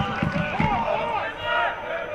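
Voices shouting at a football match, a few short rising-and-falling calls over the murmur of the crowd.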